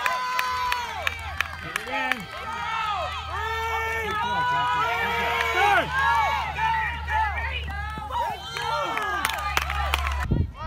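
Spectators at a youth baseball game shouting and cheering, many voices overlapping with no clear words, loudest about halfway through. Scattered sharp claps or knocks are mixed in.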